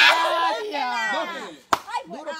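One sharp slap of a rubber slide sandal striking, near the end, after a stretch of several excited voices.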